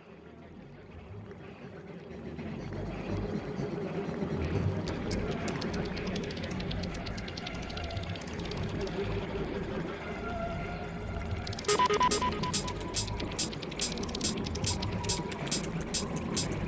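Opening of an electronic dubstep/IDM track: a dense, murky texture fades in over the first few seconds. About three-quarters of the way in, sharp, even ticks come in at about three a second, with a high held tone.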